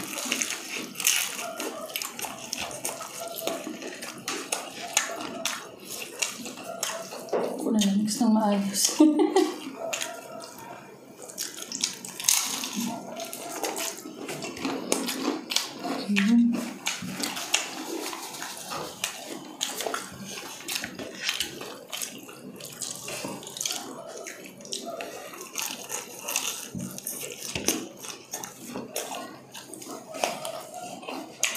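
Close-miked eating of fried chicken and noodles: irregular wet chewing and mouth sounds with many small clicks of forks on plates, plus a few brief hums.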